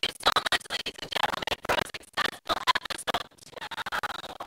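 A person's speech broken up into harsh, scratchy crackling that comes and goes in the rhythm of talking, with no words getting through: a recording fault that leaves the voice distorted and garbled.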